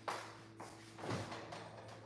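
Faint off-camera handling and shuffling noises as a person moves about a kitchen fetching a drink, a few soft scuffs and knocks, over a steady low hum.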